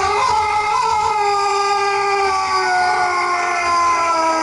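One long, unbroken howl, a single voice held on one note that slowly sinks in pitch.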